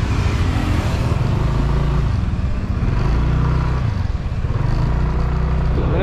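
Motorbike engine running as the bike pulls away and rides along, its pitch shifting up and down a few times, under a steady rush of wind noise on the microphone.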